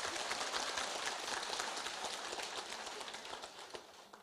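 A large audience applauding, fairly faint, dying away near the end.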